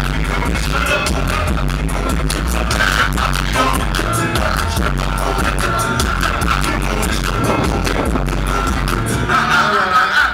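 Live hip-hop music through a festival PA, recorded from the crowd: a heavy bass line under a steady, evenly spaced drum beat. It grows brighter and a little louder near the end.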